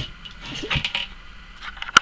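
Handling noise as a shamisen body is moved and set down on a cloth-covered table: a few soft rustles and light knocks, then one sharp knock just before the end.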